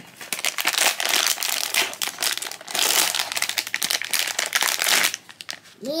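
Foil blind-box bag crinkling as it is handled and pulled open: a dense run of crackly rustling that dies away shortly before the end.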